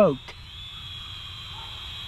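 Small toy-class drone with brushed motors, its propellers giving a steady high whine that shifts slightly in pitch about half a second in, over a low rumble of wind.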